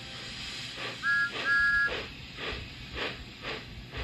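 Steam train sound effect played through a TV's speaker: rhythmic chuffs about twice a second under a steady hiss, with two short two-note whistle toots about a second in.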